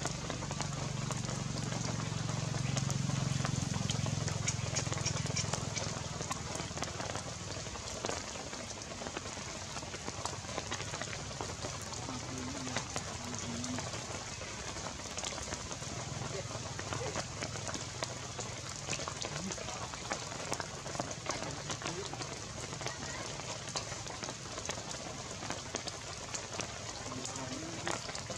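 Steady outdoor hiss with faint scattered patter, like light rain on wet ground. A low murmur of distant voices sits under it during the first six seconds.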